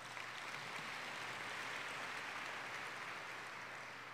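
Audience applauding, swelling in the first second or so and then slowly dying away.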